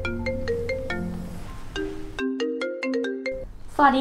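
Mobile phone ringing with a marimba-style ringtone, a quick run of plucked notes, over soft background music. The background music drops out a bit past halfway while the ringtone plays on, and the ringing stops just before it is answered.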